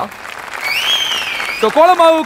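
Studio audience applauding, with a whistle that rises and then falls in pitch just under a second long, in the middle of the clapping. Speech comes back in near the end.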